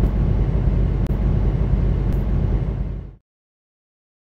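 Diesel semi-truck engine running, heard inside the cab as a steady low rumble. It fades quickly and stops about three seconds in.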